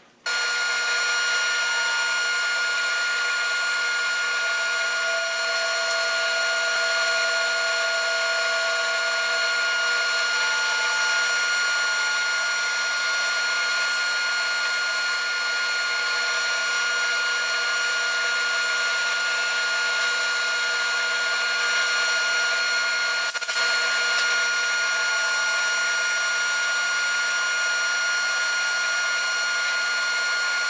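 Band saw running steadily as its blade cuts horizontal slices off a log fed on a sliding carriage. The sound starts abruptly near the beginning.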